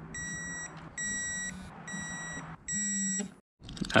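Electronic torque wrench beeping as it reaches its set torque of about 9 Nm on the intercooler bolts: four high beeps of about half a second each, roughly one a second, with a low buzz under them.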